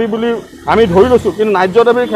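A man speaking into a handheld microphone in a street interview; only speech.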